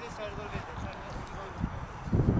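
Distant voices of players and onlookers calling out across an outdoor football field, with wind rumbling on the microphone.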